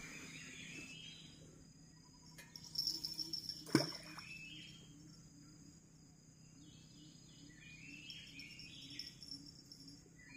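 Forest river ambience: insects droning steadily at a high pitch, with birds calling in short repeated phrases. A single sharp knock sounds about four seconds in.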